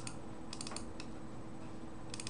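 Computer keyboard keys tapped a few times, short sharp clicks in a small cluster about half a second in and a single one at about a second, over a faint steady hum.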